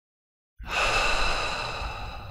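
A man's loud, breathy sigh that starts suddenly about half a second in and slowly fades.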